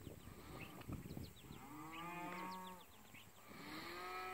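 Cattle from a herd of cows and calves mooing faintly as they are driven: one long call that rises and falls, about halfway through, and another starting just before the end.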